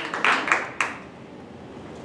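Audience applause dying away, the last few claps near the end of the first second, then quiet room noise.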